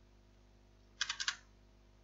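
A quick run of four or five keystrokes on a computer keyboard about a second in.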